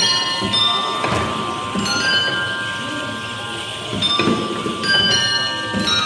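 A kinetic sound sculpture striking drums and bell-like metal tones: a few irregular strikes, some with a low drum thud, each leaving clear tones that ring on for a second or more and overlap.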